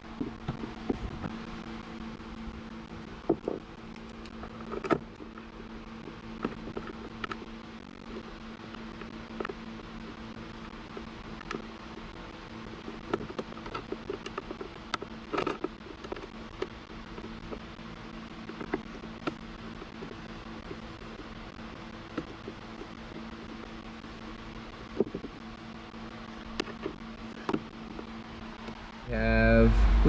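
Scattered light clicks and knocks of hands and a hand tool working as a 60-amp resettable circuit breaker is fitted and bolted down, over a steady mechanical hum.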